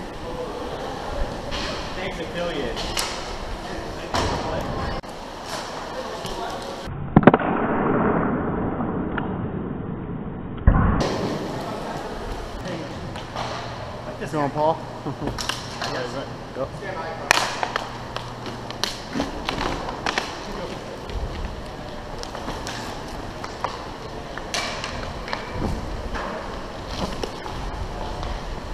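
Roller hockey play heard from a helmet camera: inline skate wheels rolling on the rink floor, with frequent sharp clacks of sticks and puck and faint shouts from players. The sound turns muffled for a few seconds about seven seconds in.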